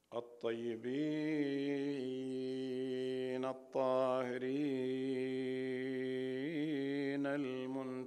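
A man's voice chanting in long, held melodic phrases, each note sustained steadily with slight wavering, broken by two short breaths about a second in and about three and a half seconds in.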